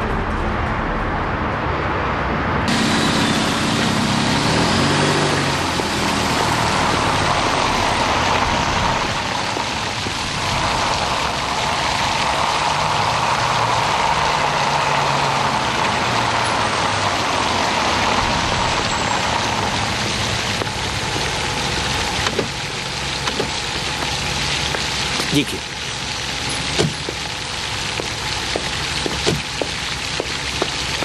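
Steady rushing and splashing of a fountain as a car drives up and stops beside it, with a few sharp knocks near the end.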